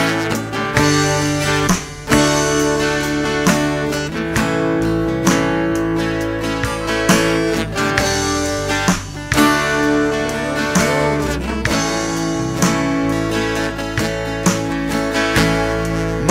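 Instrumental break in a country song: guitars strumming over a bass line and a steady beat, with no singing.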